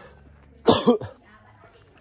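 A single short cough just under a second in.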